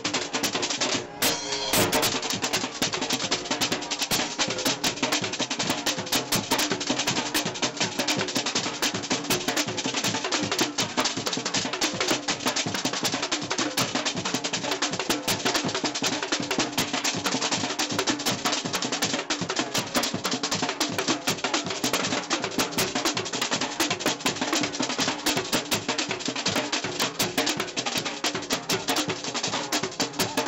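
A street drum band of several drummers playing marching snare drums with sticks, in a fast, dense, continuous rhythm with a short break about a second in.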